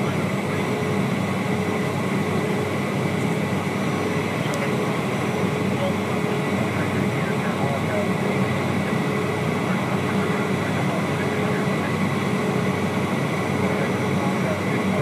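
Steady cabin noise of a Cessna Citation business jet on the ground: an even rush of engine and air noise with constant tones running through it and no change in power.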